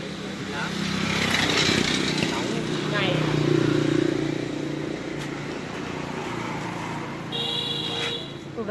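A motor vehicle engine running nearby, growing louder over the first few seconds and then easing off, under people talking in the background.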